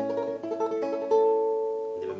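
Takamine TH5C nylon-string classical guitar playing a tremolo passage, with an open-A bass note under quickly repeated treble notes. A louder treble note comes in about a second in and rings on.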